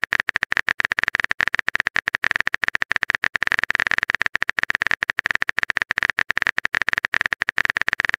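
Typing sound effect: a fast, slightly uneven run of keyboard clicks, about ten a second, as a chat message is being composed.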